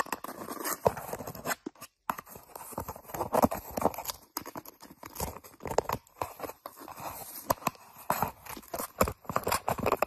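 Paper or thin cardboard crinkling, scraping and tearing as a cat paws and bites at a hole in it: an irregular run of crackles and scratches with sharp clicks, pausing briefly about two seconds in.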